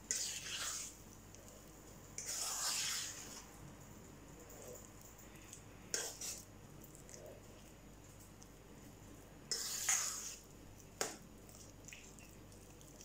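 Thick banana cake batter being stirred in a stainless steel bowl: about five short, irregular scraping strokes, with quiet between them.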